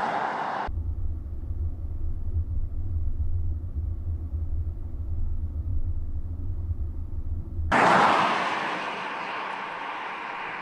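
Opel Insignia GSi Sports Tourer driving: the end of a roadside pass-by, then a steady low drone heard inside the cabin at cruising speed, then another loud pass-by about eight seconds in that fades as the car moves away.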